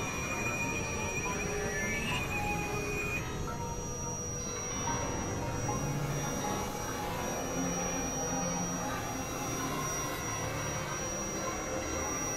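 Experimental synthesizer drone and noise music: a dense, steady noisy texture with a high-pitched tone held through most of it and a warbling tone in the first few seconds.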